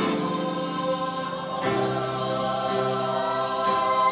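Mixed choir of young voices singing sustained chords in several parts, with piano accompaniment. A new chord comes in at the start and another about one and a half seconds in.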